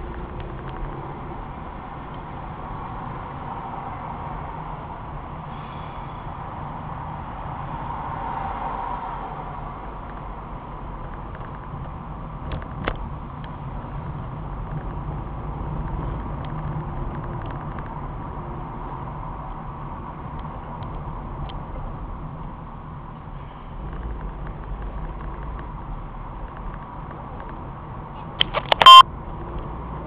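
Steady road and engine noise inside a moving car, picked up by the dashcam's microphone, with a single click about midway. Near the end comes a short, very loud beep.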